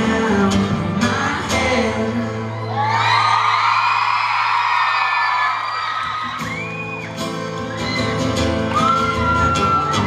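Live acoustic pop performance: two acoustic guitars strummed under a lead voice singing. For a few seconds in the middle the low guitar sound thins out, leaving long held high notes, before the strumming comes back in full. High-pitched screams from the audience rise over the music now and then.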